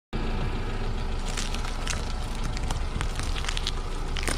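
Car tyre rolling slowly over packages wrapped in dried leaves, the leaf wrappers crackling and snapping as they are crushed flat, over a steady low engine rumble. The crackles start about a second and a half in and come thicker towards the end.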